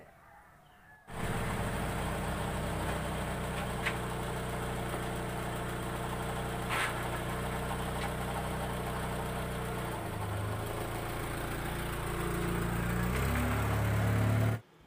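Tata Indica hatchback's engine idling steadily. It comes in abruptly about a second in, changes pitch around two-thirds of the way through, and gets louder near the end as the car pulls away.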